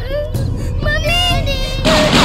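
Young girls' high voices singing held, wavering notes.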